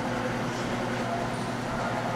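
Steady room tone of a gym: an even hiss with a low, constant hum, typical of ventilation or air handling.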